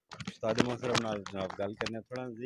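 Clicks and rubbing from a clip-on microphone being handled near the start, then a man talking close to the microphone.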